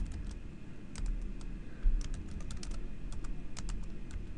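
Typing on a computer keyboard: irregular runs of keystroke clicks with short pauses between them, the fastest run filling the second half.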